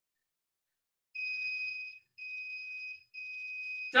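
Electronic interval timer counting down the end of a timed exercise: two short high beeps about a second apart, then a third that runs long, marking the end of the interval.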